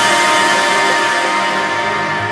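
Background electronic music: held synth tones with no bass or beat, slowly fading.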